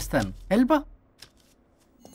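Brief film dialogue speech for about the first second, then near silence with a faint low hum.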